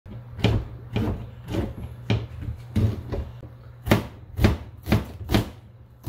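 Kitchen knife slicing oyster mushrooms on a plastic cutting board: about ten sharp knocks of the blade on the board, roughly two a second.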